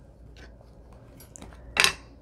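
A few faint clicks and knocks of wooden-block rubber stamps being handled and set down on a craft table, with a sharper noisy sound near the end.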